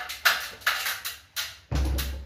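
A quick, irregular series of about five sharp knocks and bumps, the last a heavier, deeper thump near the end.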